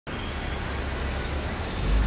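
Steady low rumble and hiss of city traffic noise, swelling slightly near the end.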